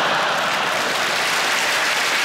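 Large theatre audience applauding and laughing, a steady wash of clapping.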